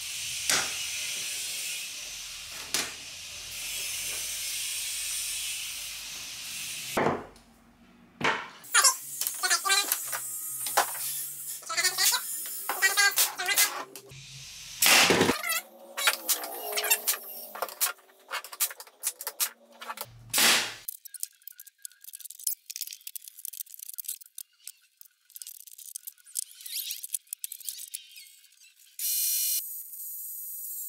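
Foam paint roller spreading a bead of wood glue over pallet-wood strips, a steady hiss. It gives way to the clatter of wood strips being handled and sharp shots from a pneumatic brad nailer, the loudest about halfway through and again a few seconds later.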